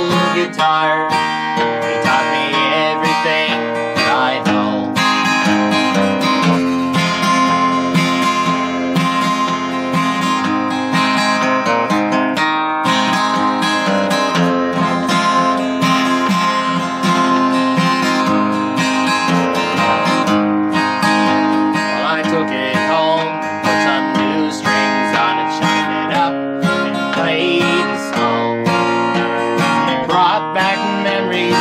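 Steel-string acoustic guitar, capoed, strummed in a steady rhythm of chords: an instrumental stretch of a country song with no words sung.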